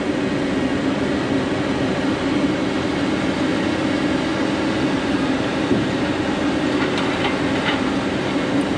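Diesel engine of heavy logging equipment running steadily, an even drone with a constant hum and no change in pitch.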